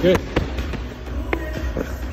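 Background music with sharp knocks from a medicine ball being thrown and landing, one about half a second in and a fainter one past the middle.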